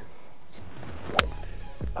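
A golf club striking a golf ball off the fairway turf: a single sharp click about a second in.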